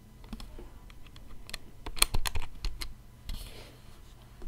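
A quick, irregular run of light clicks and taps, densest about two seconds in.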